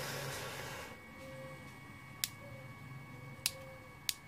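Hands handling the red plastic handle of a soldering iron: a short rustle at first, then two light clicks about a second apart.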